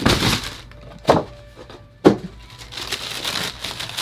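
Cardboard shoebox being handled and opened: three sharp scrapes or knocks about a second apart, then tissue paper rustling inside the box.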